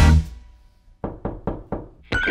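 Background music cuts off just after the start. After a short pause come about five sharp knocks, roughly four a second, each dying away quickly.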